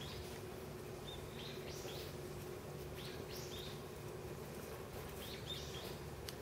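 Small birds chirping in the background: short, high calls in a few clusters, over a low steady hum.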